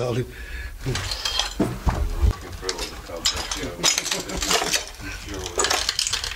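Laughter and low voices, with scattered clinks and knocks of debris and broken bits shifting on a littered floor as it is walked over, and a couple of low thumps about two seconds in.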